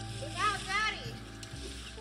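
Background music: held chord tones with a short sliding, voice-like melodic phrase about half a second in.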